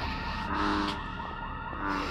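Siren sounding in quick rising-and-falling yelps, about four a second.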